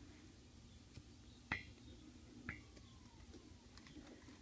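Near silence, broken by two light taps about a second apart, each with a short ring.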